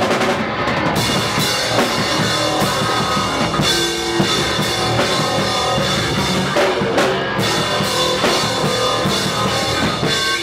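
Live band playing loud punk on electric bass guitar and drum kit, with the drums and bass running continuously.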